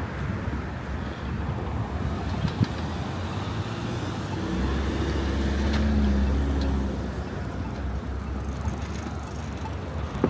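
Busy city-street traffic at an intersection, with a low engine rumble from a vehicle passing close that swells from about four and a half seconds in and fades by about seven.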